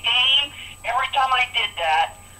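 Speech heard through a telephone line: narrow, tinny voice from a recorded conference call, in short phrases with brief gaps.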